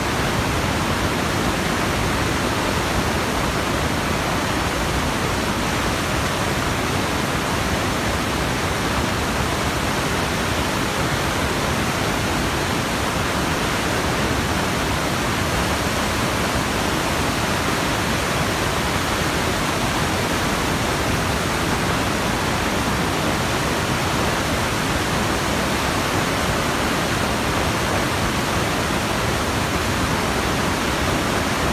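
A steady, loud hiss of even noise across all pitches, like static, that switches on suddenly and holds a constant level with no rhythm or tone.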